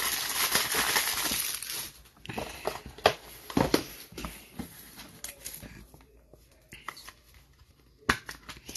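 Plastic trading-card pack wrapper being crinkled and torn off a stack of cards for about the first two seconds. Then come scattered light clicks and taps as cards and a plastic toploader are handled, growing quieter near the end.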